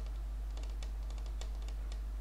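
Quick, irregular clicks of computer keys, coming in little runs about half a second in and again between about one and two seconds in, over a steady low electrical hum on the microphone.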